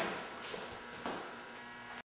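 Soft footsteps as a man gets up from a weight bench and walks away: two faint thuds about half a second apart, over a low steady room hum.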